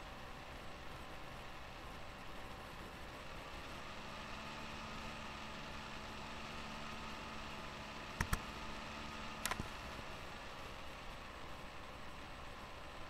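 Steady low room hiss and faint hum, with a quick double click of a computer mouse just after eight seconds in and a single click about a second later.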